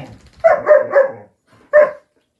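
Dog barking: three quick, loud barks in a row about half a second in, then a single bark near the end.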